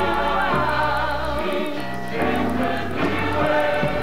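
Gospel music: a choir singing over a low bass line.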